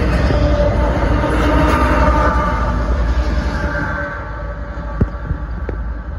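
Double-stack container cars of a freight train rolling past close by: a loud, steady rumble of steel wheels on rail with thin, high squealing from the wheels. It eases off after about four seconds, and a sharp click comes near the end.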